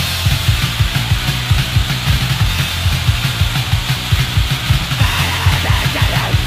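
Fast, loud 1980s hardcore punk recording: rapid drum-kit hits under a dense wall of distorted guitar, with no clear vocals in this stretch.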